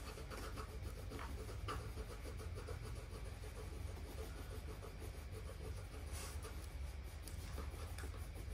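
Faint scratching and rubbing of coloured pencils on paper as three children colour in drawings, over a low steady room hum.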